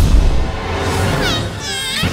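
Cartoon soundtrack: music with a heavy low hit at the start, then a quick falling squeaky sweep and a wavering high-pitched cartoon sound effect near the end.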